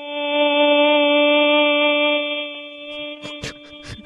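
A radio caller's imitation of an emergency alert tone over the phone line: one long, steady, droning tone at a single pitch. It softens near the end as a few sharp clicks come in.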